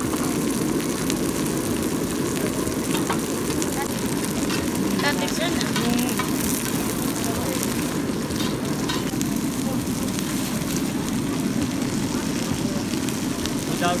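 Shredded cabbage and carrot sizzling steadily on a large flat griddle pan, with a metal spatula scraping and clicking against the pan now and then, over a steady low rumbling noise.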